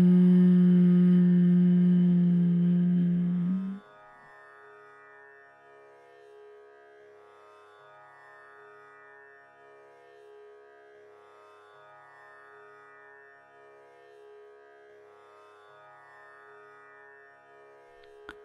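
A woman humming one long, steady note on an exhaled breath, which stops abruptly about four seconds in. Soft instrumental background music with a sustained drone and slowly changing notes continues underneath and then on its own.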